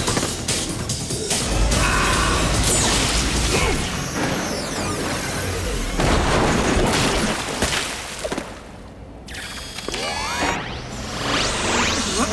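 Cartoon action soundtrack: dramatic background music mixed with booming crash and impact effects. A deep rumble sets in about a second and a half in, the sound drops away briefly near nine seconds, and rising swept tones follow near the end.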